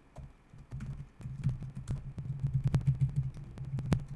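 Typing on a computer keyboard: a quick, irregular run of key clicks with low thuds, a few louder strokes near the end.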